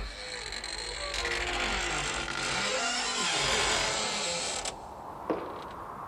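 A drawn-out creaking sound with wavering, sliding pitches, cutting off abruptly a little under five seconds in.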